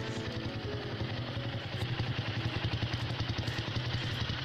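Motorcycle engine running at low speed with a steady, even pulsing beat.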